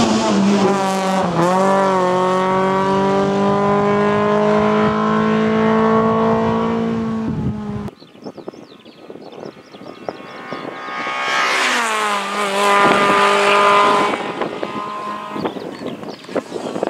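Fiat Seicento rally car engine revving hard under acceleration out of a bend, its note climbing steadily for several seconds and then cut off abruptly. After a quieter gap the car is heard again, approaching with its engine note rising and dipping through gear changes, then passing and fading away.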